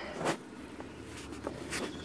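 A few soft footsteps rustling through grass and low plants, over a faint steady background hiss.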